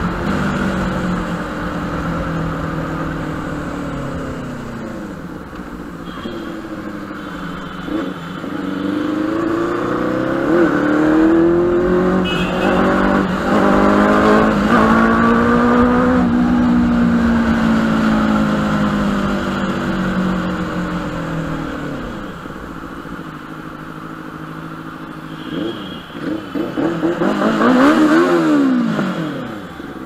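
Benelli TNT 600i's inline four-cylinder engine under way, its pitch climbing and falling as it accelerates through the revs and eases off. Near the end a quick run of short throttle blips, then one sharp rise and fall in pitch.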